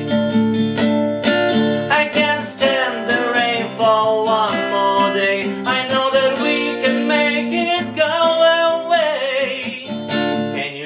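Acoustic guitar strummed in chords, with a man's singing voice carrying a wordless melody over it from about two seconds in.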